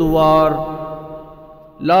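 A man chanting a line of Urdu verse as the show's theme: one long held note that fades away, then the next line begins near the end.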